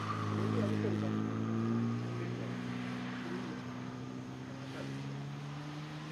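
Classic Mini's A-series four-cylinder engine running under load, its note shifting with the throttle. It is loudest in the first two seconds, then fades as the car moves away.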